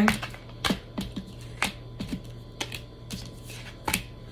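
Tarot cards being handled and shuffled against a tabletop: a series of irregular light clicks and taps, roughly two or three a second.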